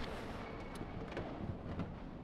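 Quiet room tone: a low, steady hiss with a few faint ticks.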